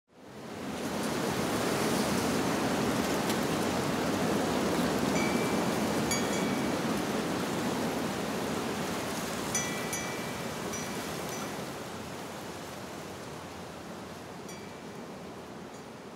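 A steady rushing ambient noise that swells in over the first second or two and slowly fades through the second half. A few brief high tinkling tones sound over it, most around the middle.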